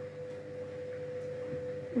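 Washing machine running, a steady humming tone that stops just before the end.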